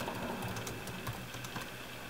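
Computer keyboard typing: a run of irregularly spaced keystrokes as a line of code is entered.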